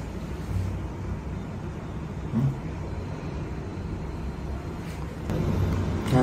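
Steady low rumble of background noise, like distant traffic, with one brief low sound about two and a half seconds in.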